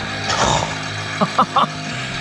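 A short rustle of long grass being pulled by hand out of a clogged model mower, about half a second in, over a steady low hum.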